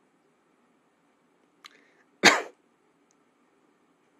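A man's single sharp cough about two seconds in, just after a faint click, from breathing in while trying to swallow saliva.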